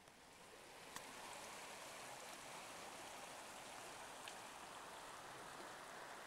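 Creek water running over rocks: a faint, steady rush that swells in over the first second and then holds even. A faint click about a second in.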